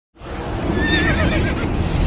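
A horse whinny sound effect: one wavering, high neigh about a second in, over a loud, low rumble.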